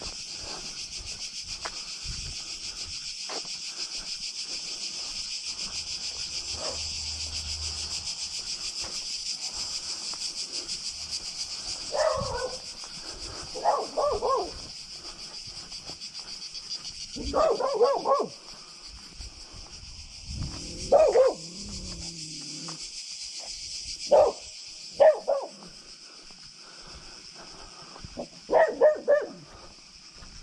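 A dog barking in short bursts of a few barks each, about seven bursts starting some twelve seconds in, with a lower drawn-out growl or whine among them, over a steady high-pitched chorus of cicadas.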